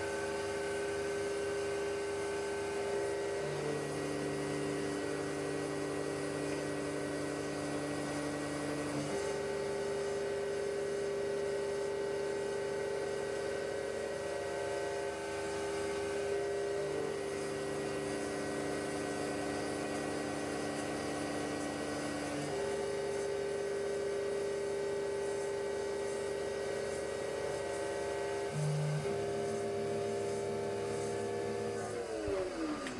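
Grizzly G8689Z CNC mini mill cutting aluminium with a 2 mm tapered ball mill: a steady motor hum made of several tones that jump to new pitches in steps every few seconds as the machine moves.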